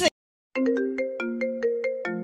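iPhone ringtone for an incoming FaceTime call, starting about half a second in as a quick, bright run of plucked, marimba-like notes.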